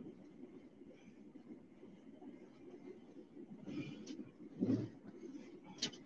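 Faint low road and engine rumble inside a moving vehicle's cabin, with a couple of brief soft noises around four to five seconds in.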